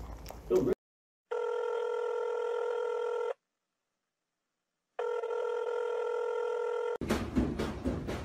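Electronic telephone ringing tone: two steady, buzzing rings of about two seconds each, with a silent pause of about a second and a half between them.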